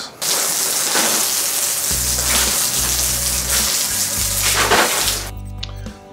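Water spraying from a garden hose onto a concrete bench top, a loud steady hiss that fades out near the end. Background music with low bass notes comes in about two seconds in.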